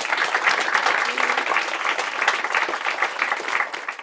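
Audience applauding: dense, steady clapping from a room full of people that starts to thin out near the end.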